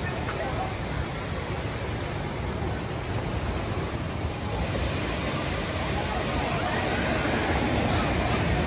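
Steady rush of water from an amusement park water ride's chute and splash pool, slowly growing louder, with people's voices in the background.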